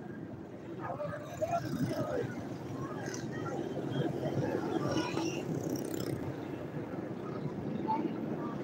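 Road traffic and vehicle noise from a ride along a busy city street, with snatches of voices over it.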